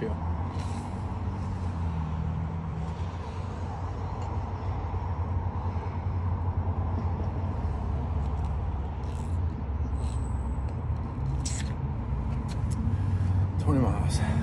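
Steady low rumble of road traffic and motor vehicles, swelling and easing as cars pass, with a few short clicks about two-thirds of the way in.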